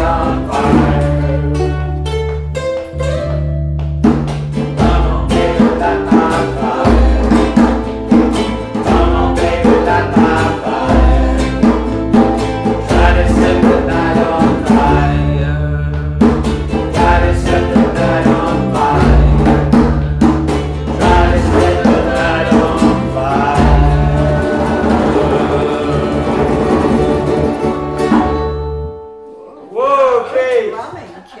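Ukuleles strummed together over a U-Bass line and djembe, with voices singing along, playing the last chorus of a rock song. The music stops suddenly about a second before the end.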